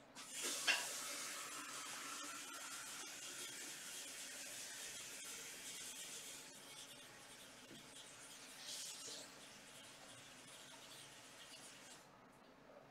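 A soft hiss of noise that starts suddenly, swells for a moment, then slowly eases over several seconds, with a second short hiss later on.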